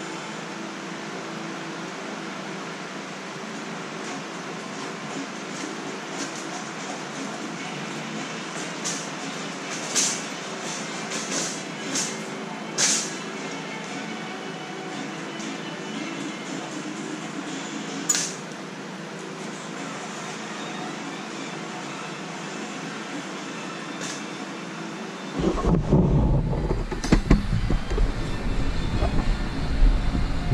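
Steel mesh utility wagon on air-filled tyres being pulled across a concrete garage floor: a few sharp metallic rattles and clicks from the frame over a steady background hum. Near the end, louder rumbling and knocking set in.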